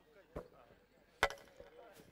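Two sharp knocks about a second apart, the second louder and followed by a brief ring.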